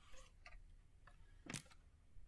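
Near silence in a quiet room, broken by a few faint, irregular clicks and taps; the clearest comes about a second and a half in.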